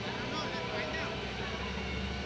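Steady low hum of an idling engine, with faint voices in the background.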